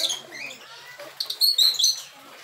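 Small parrots (loritos) chirping in an aviary: short, shrill calls, one burst at the very start and a quick cluster of them in the second half.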